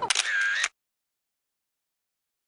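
Camera shutter sound as the photo is taken: a sharp click followed by a short bright whirr, lasting under a second and cutting off abruptly.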